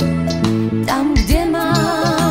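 1980s pop song playing: a wavering, vibrato melody line over a stepping bass line and a steady beat.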